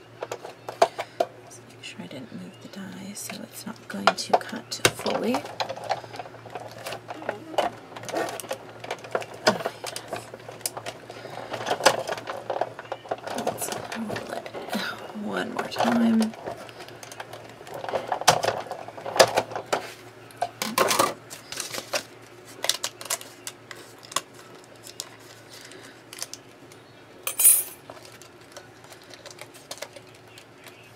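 A manual die-cutting machine in use. Metal cutting plates and a die click and knock as they are handled and fed in. There are stretches of rolling mechanical noise as the crank is turned and the plates pass through the rollers.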